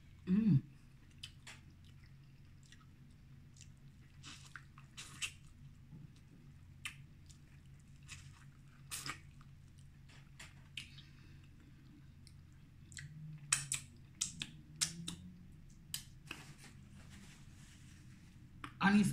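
A person chewing and biting spicy seafood close to the microphone: quiet chewing with scattered short clicks, busier around two-thirds of the way through. A brief, loud hummed vocal sound near the start.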